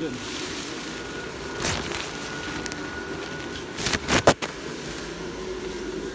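Airblown inflatable's tornado blower fan running with a steady hum as the inflatable fills. A knock comes about two seconds in, and a short cluster of loud knocks comes about four seconds in.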